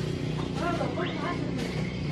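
Yamaha Mio scooter's small single-cylinder four-stroke engine idling steadily, with faint voices in the background.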